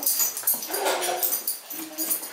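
A dog whining in short, steady, thin tones, once near the middle and again near the end.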